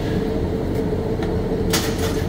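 Steady mechanical drone with a constant hum, typical of a welding booth's ventilation running. A short scrape sounds near the end.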